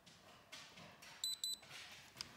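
Handheld spectrometer giving two short, high-pitched electronic beeps about a quarter second apart, a little over a second in, as it captures a new light measurement.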